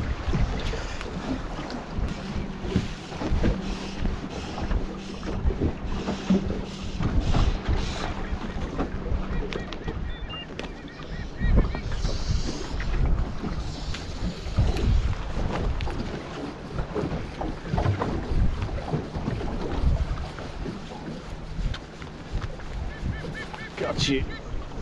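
Gusty wind buffeting the microphone, with small waves slapping against the hull of a small boat. A low steady hum runs for several seconds in the first half.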